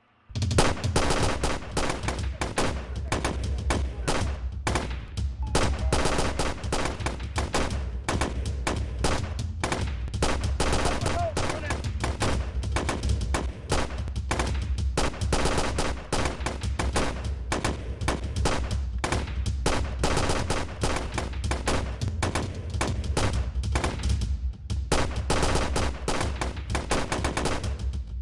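A shootout: rapid, near-continuous gunfire from several handguns at once, starting abruptly and easing off briefly about 24 seconds in before picking up again.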